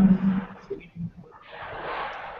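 A man's voice over a video-call line, trailing off at the end of asking whether he can be heard, followed by a hiss of line noise that grows slightly louder near the end.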